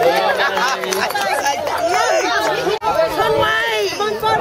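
Several voices talking over one another in an excited crowd of children and adults, with a brief dropout near three seconds in.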